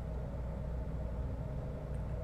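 Steady low hum with faint hiss: the room tone of the studio, with nothing else sounding.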